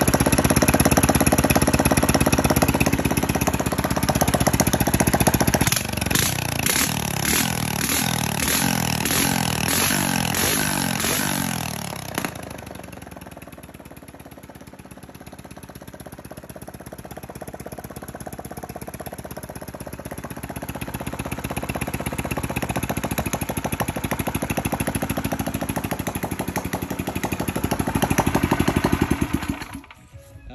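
Small air-cooled single-cylinder engine, fitted with an aftermarket carburetor, running with its throttle worked by hand. It runs fast and unevenly for the first dozen seconds, drops to a lower, quieter speed, builds back up, and then cuts off suddenly at the end.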